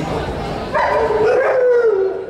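A dog giving a drawn-out, howling call in the second half, its pitch rising and then falling before it fades.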